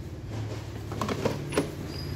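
The grey plastic electrostatic filter unit of a Daikin air purifier being handled in its slots, giving a few light plastic clicks and knocks over a steady low hum.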